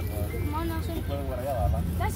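High-pitched children's voices talking and calling over a steady low rumble.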